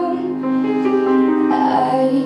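A young female vocalist singing a slow song through a microphone, accompanied on grand piano. Sustained notes, with a new vocal phrase starting about one and a half seconds in.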